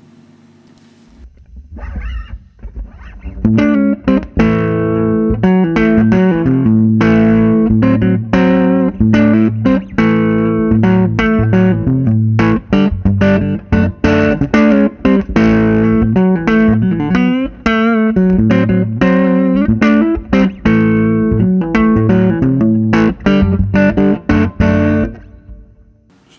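Electric guitar played through a 1960 EkoSuper combo amplifier on its normal channel, at low volume: a run of picked notes and chords starting about two seconds in, after a moment of amp hum.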